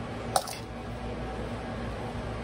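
A metal spoon spreading cinnamon sugar over cake batter in a metal loaf pan, with one sharp clink of spoon against metal about a third of a second in, over a low steady hum.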